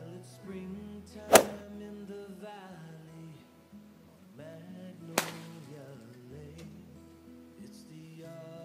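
Two sharp cracks of golf clubs striking balls off practice mats, about four seconds apart, over background acoustic-guitar music.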